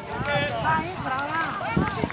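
Several people's voices talking and calling out in the street, overlapping, with a single thump near the end.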